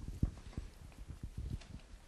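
A run of soft, irregular low thumps and knocks, several a second, with one stronger knock a quarter of a second in.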